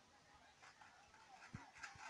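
Near silence: faint distant voices, with a soft knock about one and a half seconds in.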